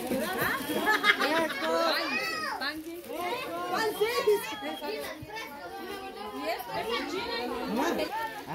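A crowd of children chattering and calling out over one another, high young voices mixed with some adult talk.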